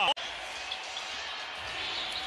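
A commentator's voice cut off abruptly by an edit just after the start, then steady arena background noise of a basketball game with no distinct sounds standing out.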